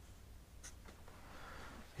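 Felt-tip marker writing on flip-chart paper: a few short, faint strokes, then a soft rub in the second half.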